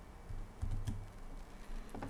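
Quiet clicking of computer keyboard keys being typed.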